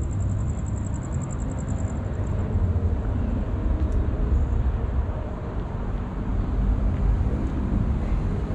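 Outdoor city ambience: a steady low rumble of road traffic and wind. A high, fast-pulsing trill fades out about two seconds in.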